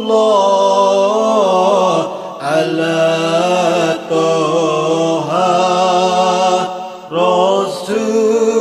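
Sholawat, Arabic devotional praise of the Prophet, chanted in long, wavering held notes with short breaks between phrases.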